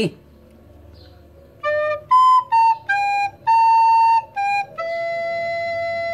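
Soprano recorder playing a slow seven-note phrase, D, B, A, G, A, G, then E, starting about a second and a half in. The last note, the E, is held for about a second and a half.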